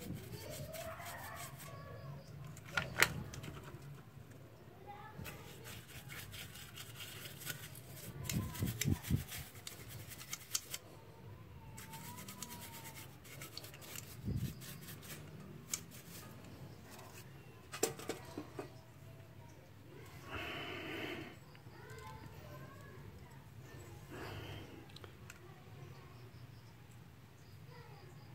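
A brush scrubbing a petrol-wet motorcycle carburetor over a steel bowl: scratchy brushing, with irregular clicks and knocks of the metal body against the bowl and the brush handle.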